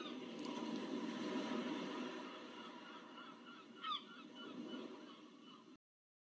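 Faint background ambience: a steady hiss that swells and fades, with a short honking bird-like call about four seconds in. It cuts off abruptly shortly before the end.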